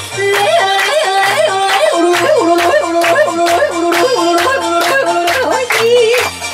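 A woman yodeling, her voice flipping back and forth between a low and a high note several times a second, over a backing track with a steady beat and bass line.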